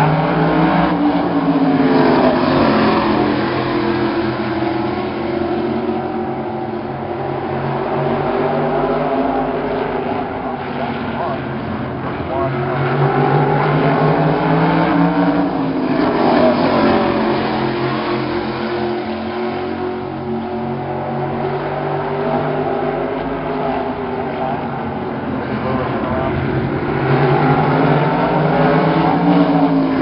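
A pack of modified race cars running laps on a short oval track. The engines swell and then fade as the cars pass, about three times, their pitch rising on approach and dropping away.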